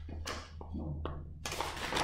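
Paper being handled: a few short rustles and light taps at irregular moments, with a low steady hum underneath.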